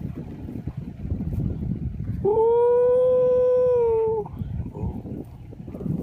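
An animal's single long, steady call lasting about two seconds, held at one pitch like a howl, with a low rumble underneath.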